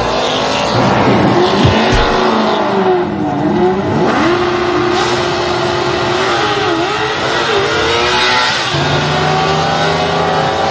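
Race car engines running and revving, their pitch repeatedly dipping and rising, with a deeper engine note joining near the end.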